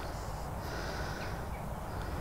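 Steady low outdoor rumble with faint high bird chirps, most noticeable in the first second.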